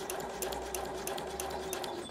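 Husqvarna Viking sewing machine running a straight stitch through fabric: a steady motor hum with rapid, evenly spaced needle ticks, really quiet. It stops right at the end.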